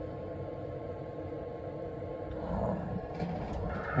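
Steady hiss and hum of radio gear, with a steady mid-pitched tone coming on near the end.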